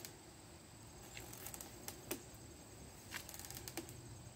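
Quiet outdoor background with a few faint, scattered ticks and clicks, one about two seconds in dropping in pitch.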